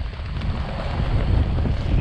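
Wind buffeting the microphone: a steady low rumbling noise.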